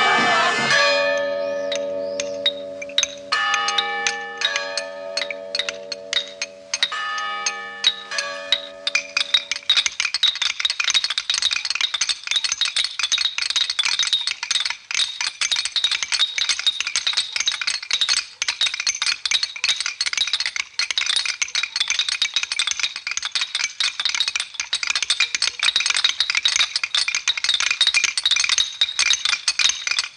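Film soundtrack: voices fade out at the very start, then a sustained chord of several held tones with scattered clicks runs until about ten seconds in. A dense, continuous rattling and clinking fills the rest.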